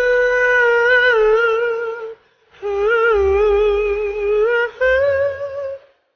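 High male voice singing long, wordless held notes with vibrato: three sustained notes, with a short break for breath about two seconds in, the last note pitched a little higher.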